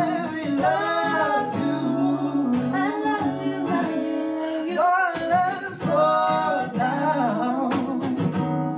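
Acoustic guitar played under a man and a woman singing a song together, their voices gliding and holding notes over the guitar's chords.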